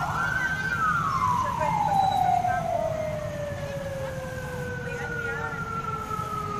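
A siren rises quickly at the start, then winds down in one long, slowly falling wail, with a second, higher tone falling more gently alongside it. Low traffic rumble runs underneath.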